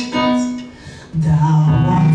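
A gospel worship song: a woman sings into a microphone over instrumental accompaniment, with long held notes and a brief dip in loudness about halfway through.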